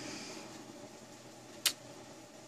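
Quiet room tone with a single short, sharp click a little past one and a half seconds in.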